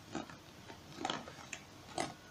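Faint handling of a doll's cardboard-and-plastic window box: a few soft clicks and crinkles as hands turn it, the loudest about a second in and at the very end.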